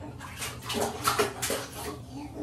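Water splashing in a baby bathtub as a baby is washed, a quick run of splashes from about half a second in.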